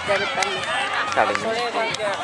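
Many voices calling and shouting over one another, as of players and onlookers at a ball game on a sand court, with a sharp knock near the end.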